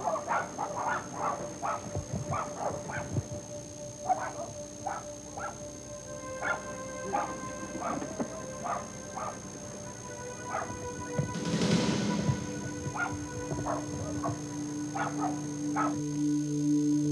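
A dog barking over and over, quick barks at first and then more spaced out, while a background music score of held tones comes in about six seconds in and briefly swells with a rushing noise about three-quarters of the way through.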